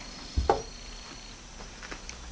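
Aluminium tube set down on a cloth-covered workbench: one short, soft thump about half a second in, then only quiet workshop background.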